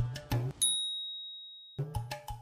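Background music with a couple of drum hits breaks off, leaving a single high bell-like ding that rings and fades away for about a second; the music comes back near the end.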